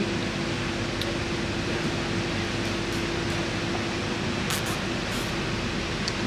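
Steady hiss of air conditioning with a constant low hum.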